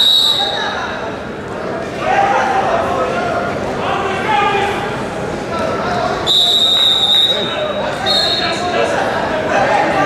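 Referee's whistle blown three times: a short blast at the start, then a longer blast and a short one about six to eight seconds in, over people's voices in a large hall.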